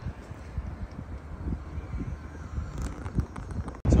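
Outdoor background noise: a low rumble with irregular soft low thumps that cuts off abruptly near the end.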